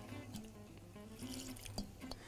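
Faint liquid pouring and dripping as vinegar goes into a plastic food-processor bowl, over quiet background music.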